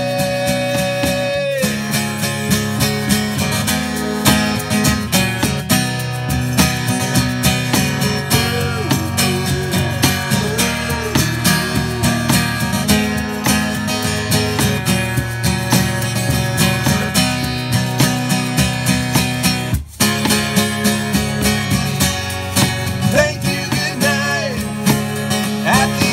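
Strummed acoustic guitar with cajon and shaker keeping a steady beat, played live as an instrumental passage of a song. A held sung note ends about a second and a half in, the music stops for a moment near twenty seconds, and singing comes back near the end.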